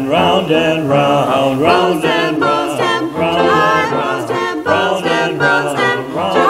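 Small mixed vocal ensemble of men and women singing a cappella in harmony.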